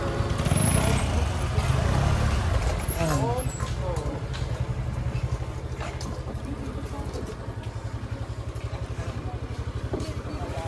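Motorcycle engine idling with a steady low pulse, a little louder in the first few seconds, with a few brief voices over it.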